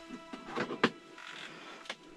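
Handling noise: rustling and scraping with two sharp clicks, the louder one a little under a second in and another near the end.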